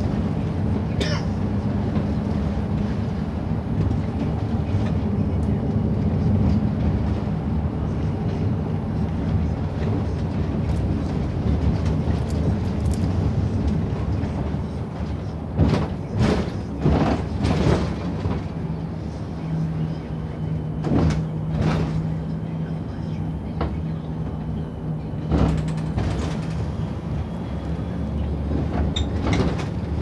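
Steady low drone of a coach's engine and road noise heard from inside the passenger cabin, with a steady hum joining in about halfway through. A few brief sharp sounds come in the middle and again a little later.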